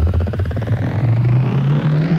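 Bounce (UK hard dance) music at a build-up: the steady beat thins out about halfway through as a noise sweep rises in pitch and a deep bass tone glides upward.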